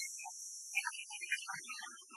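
A steady high hiss, like worn tape, under faint scattered musical notes of the cartoon's soundtrack. The hiss fades away toward the end.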